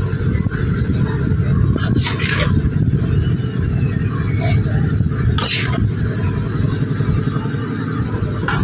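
A steel spatula scraping and clinking against an aluminium kadai and a steel plate as fried rice is served, a few short strokes, the loudest around two and five and a half seconds in, over a steady low rumble.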